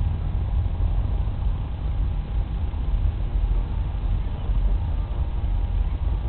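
Wind buffeting the microphone as a steady low rumble, with a faint steady whine from the radio-controlled model plane's motor above it.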